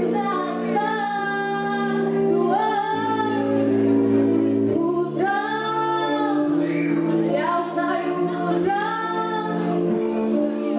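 A woman singing through a handheld microphone over sustained accompaniment chords, holding long notes with vibrato in phrases of a second or two.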